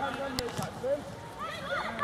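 High-pitched shouts and calls of young footballers on the pitch, fainter at first and louder from about three-quarters of the way through, with one sharp knock about half a second in.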